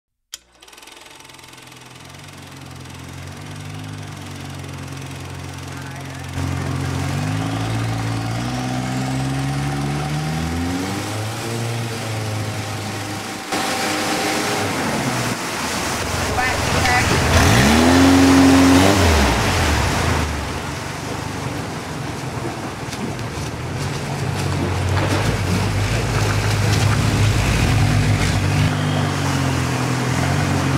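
Motorboat engines on a river, their pitch rising and falling. One engine revs up sharply and is loudest a little over halfway through, with a rushing noise around it.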